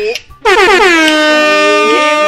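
Air horn blast, very loud: one long note that drops in pitch as it starts about half a second in, then holds steady.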